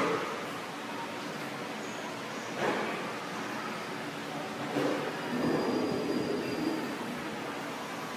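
Steady background hiss with faint, indistinct voices from people in the room, louder about a third of the way in and again in the second half.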